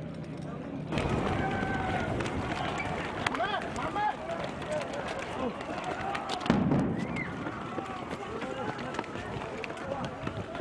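Outdoor crowd at a street demonstration, many voices calling and shouting at once; about six and a half seconds in, a single sudden loud blast, the suicide bomb going off, with the crowd noise carrying on after it.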